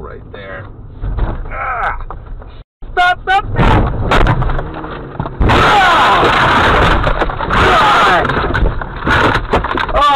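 A car crash heard from inside the car as it goes off the road and tips onto its side: shouting, then a sudden loud crash with scraping about halfway through, and people yelling over it.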